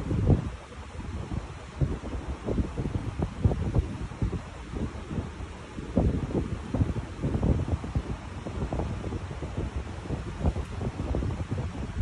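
Low, irregular gusts of rumble on the microphone, like air buffeting it, with no clock ticking to be heard.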